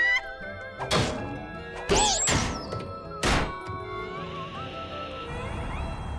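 Cartoon music score punctuated by three slapstick thunks over about three seconds, the second followed by a falling whistle.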